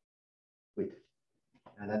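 A pause in speech: silence, a brief hesitant voiced 'uh' about a second in, then a man starting to speak near the end.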